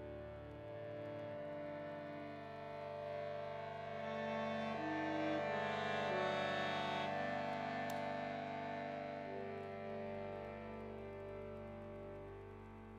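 Concert accordion playing long sustained chords that shift slowly from one to the next, swelling to its loudest around the middle and fading near the end.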